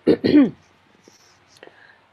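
A woman's voice says one drawn-out syllable with falling pitch, then there is quiet room tone with a single faint click about a second and a half in.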